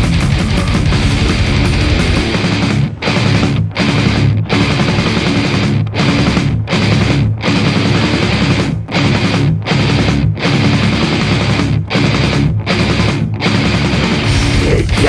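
Instrumental death metal passage: heavily distorted electric guitars, bass and drums playing a stop-start riff. Short breaks come in groups of three, about three-quarters of a second apart, over most of the stretch.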